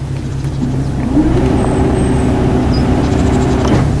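Canal cruiser's engine throttling up as the boat pulls away under power. The engine note rises about a second in, then holds steady over a constant low hum.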